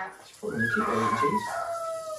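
A young girl crying and whining, heard from a television: a drawn-out high wail starts about half a second in and slides down in pitch, then drops to a lower held note near the end.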